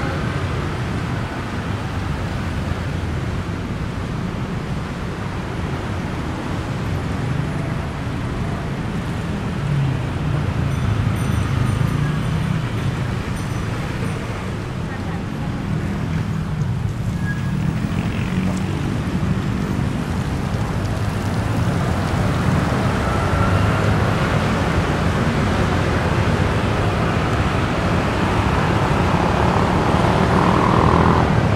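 Steady rumble of heavy city road traffic: cars and motorbikes passing continuously on a busy multi-lane road.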